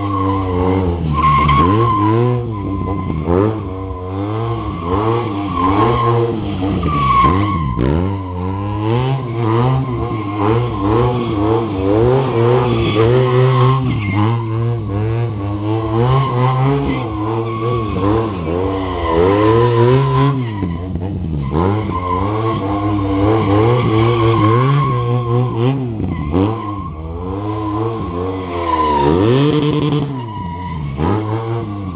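Stunt motorcycle engine revving up and down over and over, every second or two, while the rear tyre squeals as it slides on asphalt through drifting circles.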